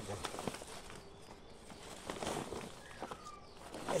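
Quiet rustling and crinkling of a blue plastic tarp being handled, with scattered scuffs and clicks, busiest about two seconds in.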